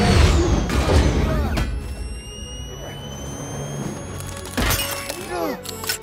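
Film fight-scene soundtrack: a score playing under a series of heavy hits and crashes, several in the first second and a half and more about four and a half seconds in, with a thin high whine rising slowly in between.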